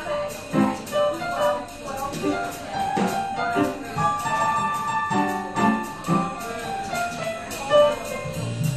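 Stage keyboard playing a jazz instrumental passage alone: a run of chords and melody lines.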